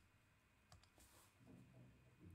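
Near silence: faint room tone with a few soft computer-mouse clicks a little under a second in.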